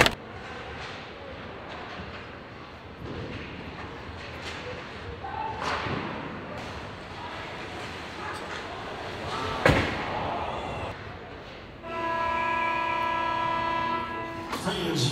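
Ice hockey play: skates scraping on the ice with stick and puck clacks, and a loud sharp clack about ten seconds in. About two seconds before the end, the arena's goal horn starts blasting a steady, many-toned note, signalling a goal.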